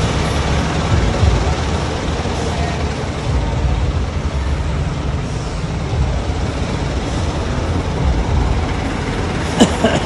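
Jeepney engines idling in a covered terminal, a steady low rumble, with voices in the background. A short laugh comes right at the end.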